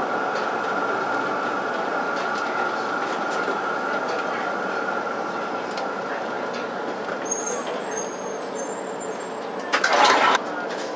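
Tram running on its rails, heard from the driver's cab: a steady rumble with a whine that fades away after several seconds. A faint high squeal comes in near the end, and a short loud burst follows at the very end.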